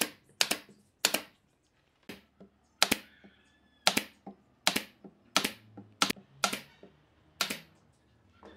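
SOYI pneumatic brad nailer firing brads into wooden strips and frame: about a dozen sharp shots at uneven intervals, roughly one to two a second.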